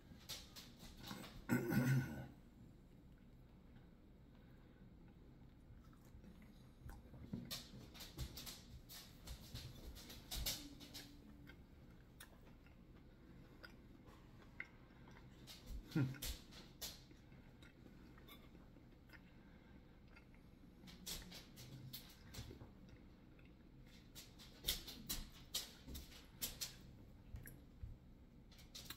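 A person chewing a crunchy snack: faint, scattered crunches and mouth sounds.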